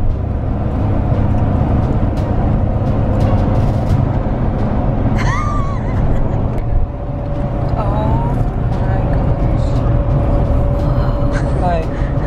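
Car cabin road noise while driving at highway speed: a steady, loud low rumble of tyres and wind. Brief wordless voice sounds break in about five and eight seconds in and again near the end.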